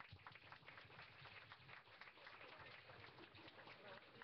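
A roomful of people applauding, a steady patter of many hand claps.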